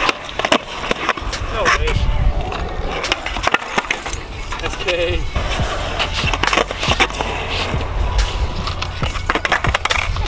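Skateboard on rough concrete: urethane wheels rumbling over the surface, with repeated sharp clacks of the tail popping and the board slapping down as flip tricks are tried and landed.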